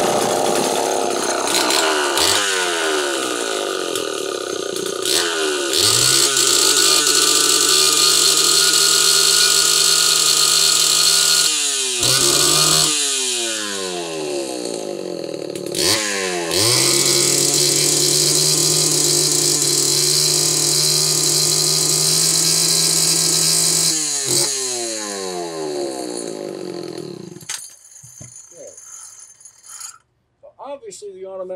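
A Homelite Super XL two-stroke chainsaw engine is run up to high revs twice, held for several seconds each time, and drops back with falling pitch in between. It is shut off near the end. The saw pops, bangs and cuts in and out at high rpm, which the owner takes for a failing ignition condenser.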